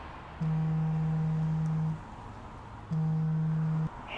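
Two steady, low electronic tones from the trailer's soundtrack: the first lasts about a second and a half, and the second, after a short gap, about a second.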